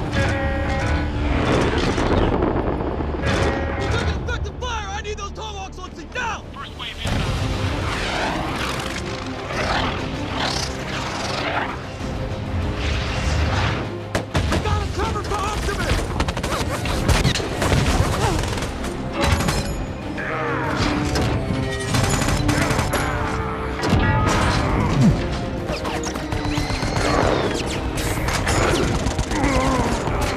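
Action-film battle sound mix: repeated explosions and bursts of gunfire layered over background music.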